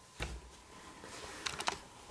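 A few faint clicks over quiet room tone: one near the start, then a quick run of about three about a second and a half in.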